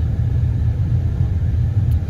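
Steady low rumble of a car, heard from inside the cabin.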